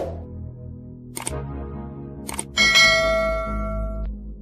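Intro jingle: a low music bed with two short clicks, about a second and two seconds in, then a bell chime rings out loudly from about two and a half seconds in, the sound effects of a subscribe-button animation.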